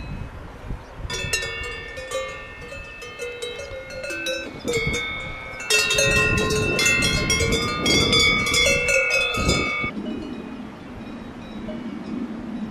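Several cowbells on grazing cows clanging irregularly at different pitches, the ringing much louder from about six seconds in to about ten.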